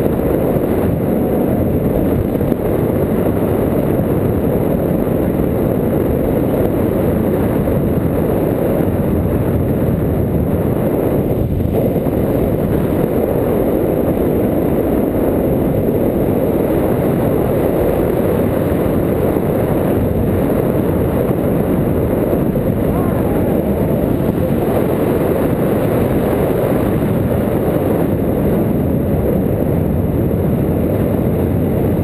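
Wind rushing over a handheld action camera's microphone in flight on a tandem paraglider: a loud, steady low rumble that never lets up.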